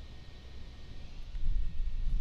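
Small battery-powered USB clip fan running on its highest speed, a steady airy whir. A low rumble comes in about a second and a half in.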